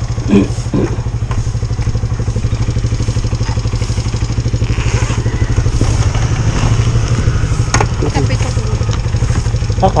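Motorcycle engine idling steadily with a fast, even pulse while the bike stands still, with one sharp click about eight seconds in.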